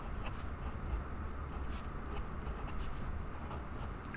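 Felt-tip marker writing on paper: a run of short, faint strokes over a steady low hum.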